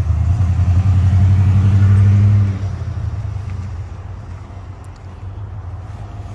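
Car engine running close by, a steady low hum that drops away to a quieter rumble about two and a half seconds in.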